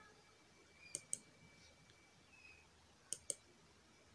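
Faint computer mouse button clicks: two quick pairs of clicks about two seconds apart.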